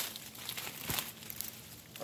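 Faint rustling and crackling of leaves and twigs as the vines are handled and pushed through, with a light snap just before the middle.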